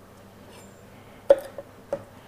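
A sharp knock with a brief ring a little past halfway, then a lighter knock near the end: a chef's knife knocking against a plastic cutting board.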